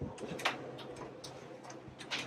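Irregular light clicks and taps, with a sharper knock about half a second in: footsteps on a hard floor as people step in through a doorway.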